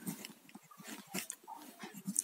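Faint, scattered scratches and light taps of a ballpoint pen writing on paper.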